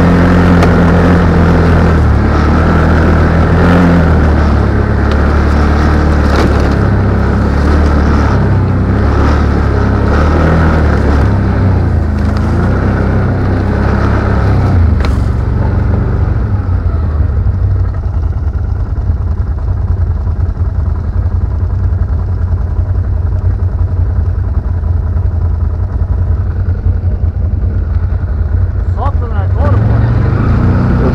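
ATV engine running, its pitch rising and falling with the throttle for the first half, then settling to a lower, steadier run about halfway through.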